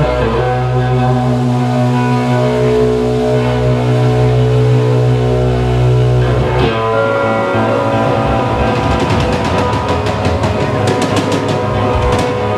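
Live blues on an amplified acoustic guitar and drum kit. Long held guitar chords with low sustained notes give way, about two-thirds of the way in, to a steady beat of sharp drum and cymbal hits.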